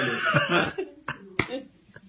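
A man's voice reciting a line of Dari verse, ending within the first second. Then, in a pause, come two short sharp sounds about a second and a second and a half in, the second louder.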